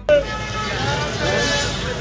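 Busy street ambience with crowd chatter and traffic passing.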